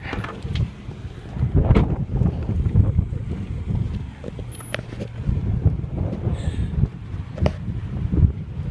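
Uneven low rumbling noise on the microphone, rising and falling irregularly, with a few faint clicks.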